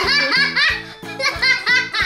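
Girls giggling over background music with a steady beat.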